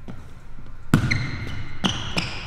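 A Wilson basketball bounced on a hard floor: a sharp bounce about a second in and another near the end, each ringing briefly in the hall.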